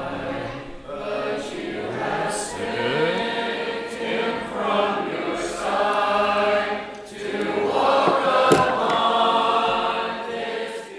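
A church congregation singing the invitation hymn together, many voices unaccompanied, in long sung phrases with a short break for breath about seven seconds in. A brief click sounds near the end.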